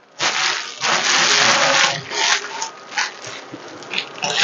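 Plastic bags rustling and crinkling as they are pulled over a loaf of bread: one long rustle of about two seconds, then a few shorter ones.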